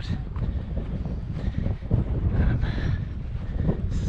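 Strong wind buffeting the camera's microphone: a gusting low rumble.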